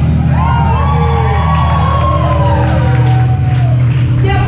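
Live rock band playing loudly, with sustained bass tones under held, bending high notes, and a crowd cheering and whooping.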